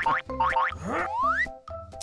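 Cartoon-style comedy sound effects: springy boings and a long rising whistle-like glide about a second in, over light background music.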